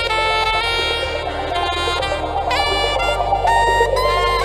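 Background music: a reedy lead melody of held notes with pitch slides over a steady low bass.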